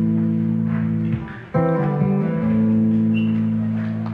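Guitar chords played and left to ring as a song's introduction: one chord dies away just after a second in, and a new chord is struck about a second and a half in and rings on.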